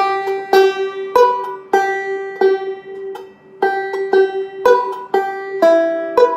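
Five-string Mastertone resonator banjo picked slowly with fingerpicks: a forward roll from a G chord at the seventh fret, each plucked note ringing on. A high G drone sounds through the roll, and the pitches change near the end.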